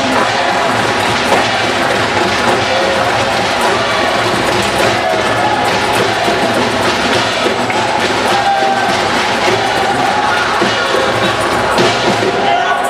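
A live percussion ensemble playing a dense, steady drum rhythm.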